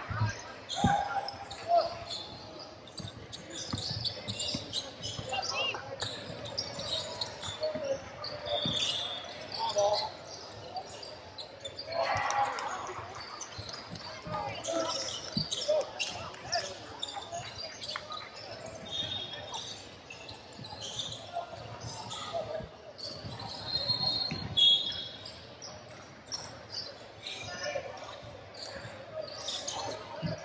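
Basketball game sounds in a large, echoing gym: a ball bouncing on the hardwood court, sneakers squeaking now and then, and players and spectators calling out.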